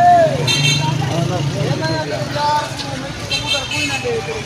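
Road traffic: a steady low engine rumble with short vehicle horn honks, one about half a second in and another near the end, among men's voices.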